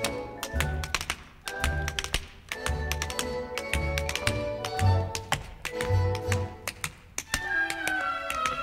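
Show-tune orchestra playing an instrumental passage from a Broadway cast recording, bass notes marking a beat about once a second, with quick sharp taps running through it.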